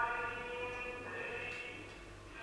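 A man's voice chanting in long held notes that step from one pitch to the next, over a faint steady low hum.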